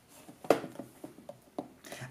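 Pocket knife cutting the plastic wrap on a small cardboard box: a few short clicks and scrapes, the sharpest about half a second in.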